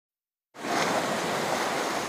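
Steady wash of lake waves breaking on an ice-crusted shore, coming in suddenly about half a second in after silence.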